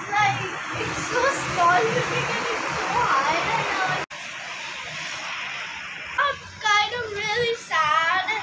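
A child's voice, without clear words, over steady background noise; the sound breaks off abruptly about four seconds in, and the voice comes back louder near the end.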